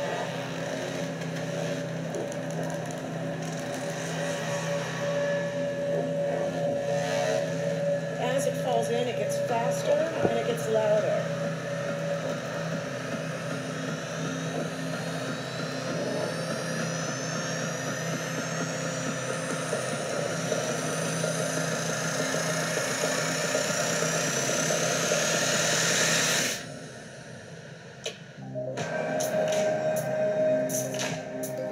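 A sonified gravitational-wave signal of a light black hole falling into a heavy one, over a steady low drone. Several tones glide upward together, rising faster and higher over the second half, then cut off abruptly a few seconds before the end. After a short lull, music starts again.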